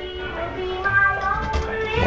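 Background music with a sung vocal line playing at a moderate level.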